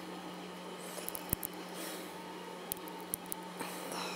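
A few faint clicks and crackles from a 3D-printed Taulman 618 nylon gear being twisted by hand, its printed layers starting to delaminate, over a steady low hum.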